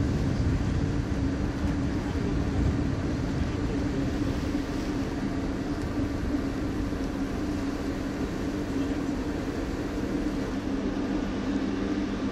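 Steady engine drone of a vessel running at sea, a constant low hum under a rushing noise.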